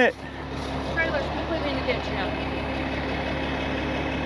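Truck engine idling steadily, with faint distant voices about a second in.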